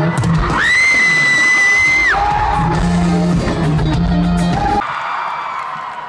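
Live rock band playing in an arena, with a long, loud, high scream from a nearby fan that rises, holds for about a second and a half, then falls. The band's sound cuts off near the end and the crowd cheers.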